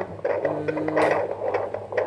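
Handheld fetal Doppler's speaker playing an unborn baby's heartbeat: a fast, even pulsing at about 140 beats a minute.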